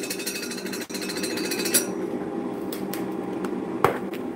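A fast, even rattle of clicks that lasts about two seconds and then stops suddenly, followed by a single sharp click near the end. A steady low hum runs underneath.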